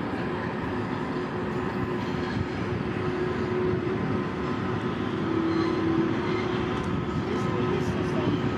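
Norfolk Southern diesel freight train running by, a steady rumble of locomotive engines and rolling wheels with a few steady humming tones over it.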